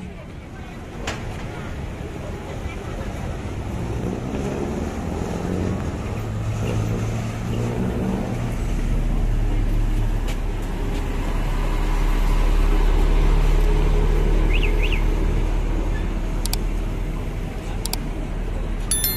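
City road traffic: vehicle engines and tyres running steadily. A low engine hum builds from about halfway through and is loudest a few seconds later.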